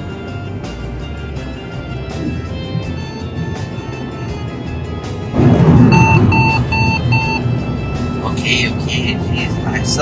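Background music, then about five seconds in, loud in-car road noise at highway speed comes in. A Mercedes-Benz dashboard chime beeps four times, about two a second, with the Attention Assist "Take a Break!" alert: the car's fatigue warning telling the driver to stop and rest.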